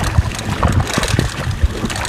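Wind buffeting the microphone in irregular low gusts, with water splashing as a hooked speckled trout thrashes at the surface beside the boat.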